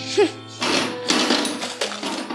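A film soundtrack with a low, sustained musical drone. A short voiced sound comes near the start, then a harsh, noisy rasp runs for a little over a second through the middle.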